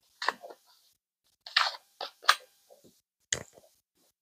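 A handful of short plastic clicks and knocks from spice containers being handled: a shaker cap snapped shut and jars picked up and set down on the countertop, with a heavier knock near the end.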